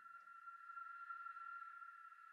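Near silence, with a faint, steady high tone held throughout.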